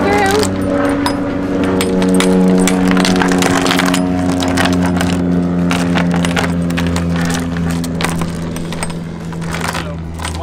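Steel anchor chain clinking and rattling as it is fed by hand, a few links at a time, down into a boat's anchor locker, with rapid irregular metallic clinks. A steady low droning hum runs underneath.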